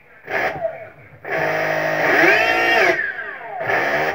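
A brushless DC (BLDC) motor running rough and noisy, its whine rising and then falling in pitch, with short bursts of noise just after the start and near the end. It turns but is loud because the hall-sensor and phase-wire combination being tried is wrong.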